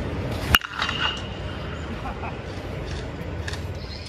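A BBCOR alloy-barrel baseball bat hitting a baseball about half a second in: one sharp crack with a short, high ring that fades quickly, over steady outdoor background noise.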